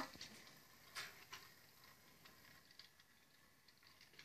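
Near silence with faint ticking and two soft clicks about a second in, from a battery-powered Thomas the Tank Engine toy train running along plastic track.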